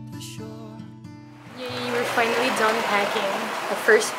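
Soft guitar background music fading out, then steady rain coming in about halfway through, with a woman starting to talk over it.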